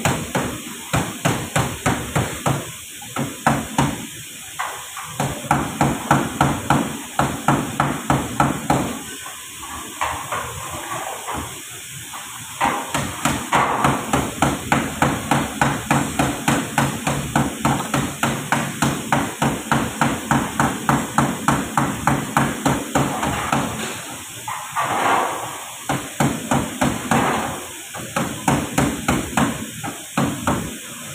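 Hammer blows on metal in long, quick series, about two or three strikes a second, broken by a few short pauses.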